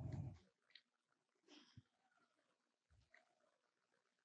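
Near silence: quiet room tone in a pause between speakers, with a short soft breath in the first half-second.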